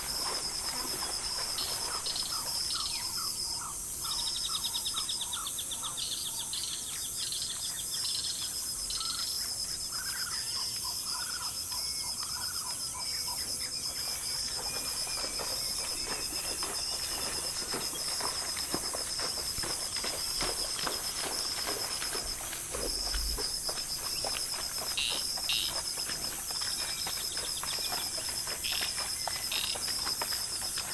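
Insects calling in a steady, high, pulsing drone, with a bird giving rows of short repeated notes a couple of seconds in and a few slurred notes around ten seconds in.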